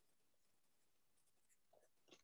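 Near silence, with a couple of very faint ticks near the end.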